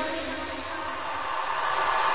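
Dubstep track in a break: the bass and drums are gone, leaving a hissing white-noise sweep with faint held synth tones that swells back up toward the end as a build-up.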